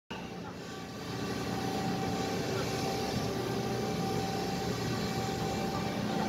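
Ship's engines and deck machinery running in a steady drone, with a thin steady whine above the low rumble.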